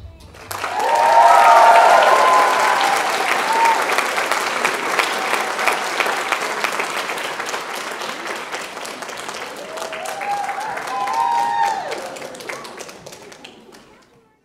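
Audience applauding and cheering at the end of a dance performance. The applause is loudest about a second in and slowly fades out, with whoops near the start and again about ten seconds in.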